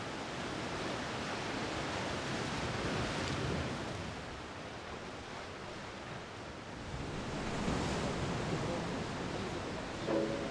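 Sea surf washing against a rocky shore, an even rushing that swells and eases in two surges, early and again near the end.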